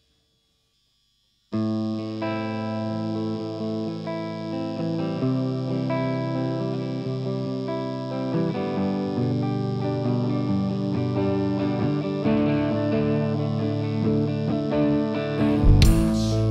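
Electric guitar starts abruptly about a second and a half in, playing a riff of sustained, ringing notes that change every second or so. Just before the end, a loud crash brings in the drums and the full rock band.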